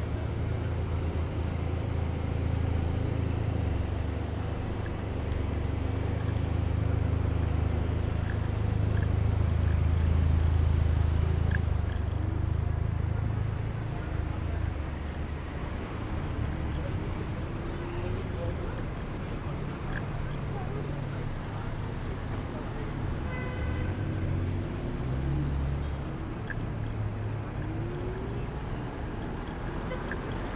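Congested city street traffic: cars idling and creeping along in a queue, a steady low rumble that swells a little partway through.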